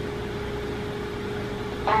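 A steady hum holding one constant tone, with a low rumble beneath it.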